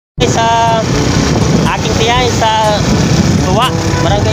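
Riding on a motorcycle: a steady rumble of engine and wind noise on the microphone, with a man's voice calling out in short phrases over it.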